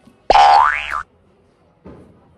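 Cartoon comedy sound effect: a 'boing' whose pitch slides up and then drops back, lasting under a second and cut in and out abruptly.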